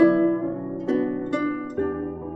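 Guzheng (Chinese plucked zither) playing a slow melody: about four plucked notes in two seconds, each ringing and fading over a sustained low note.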